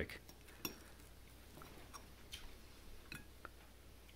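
A few faint, sparse clicks of a metal fork against a ceramic plate as a slice of fried Spam is speared and lifted.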